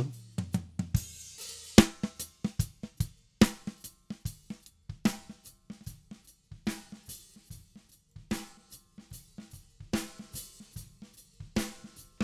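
A kick and snare drum loop playing back. The snare runs through Cubase's EnvelopeShaper with its attack turned down, so the snare's hit is softened and nearly lost.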